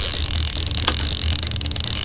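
Boat engine running steadily under wind and sea noise on an open deck, with one sharp click about a second in.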